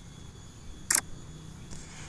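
Smartphone camera shutter sound from a Sony Xperia 5 III taking a photo: one short, sharp click about a second in, over faint steady background noise.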